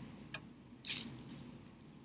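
Brief crinkling rustle of the plastic bag inside a fabric crinkle pillow as it is handled and folded, once about a second in, after a faint tick.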